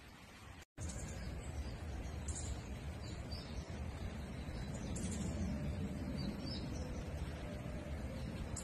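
Wild birds chirping a few times in short high calls over a steady low rumble. The sound cuts out for a moment just under a second in.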